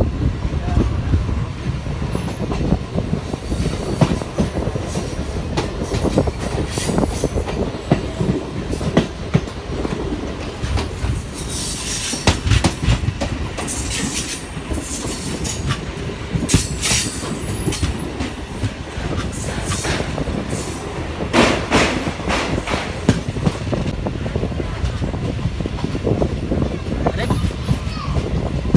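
MEMU electric train running on the rails, heard from an open doorway: a steady rumble of wheels and carriage with clatter. There are high-pitched squeals from the wheels about halfway through and again a little later.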